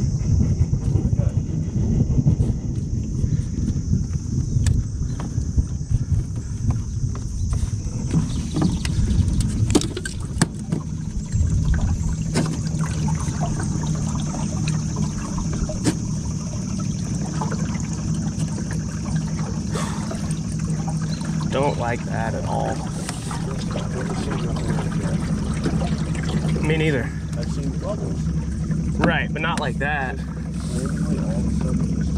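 Small boat motor running steadily, pushing the jon boat along: a constant hum with a thin high whine over it. Wind buffets the microphone as a low rumble, heavier in the first dozen seconds.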